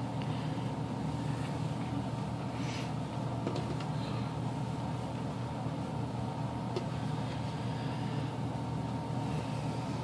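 Steady low room hum, with a few faint soft rustles as a fabric liner is handled and stitched by hand with needle and thread.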